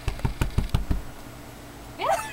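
A quick run of about six dull, low thumps within the first second, then only a steady low hum.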